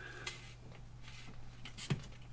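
Craft knife blade slicing through a foam glider's tail boom: faint scraping strokes and a short sharp click near the end, over a steady low hum.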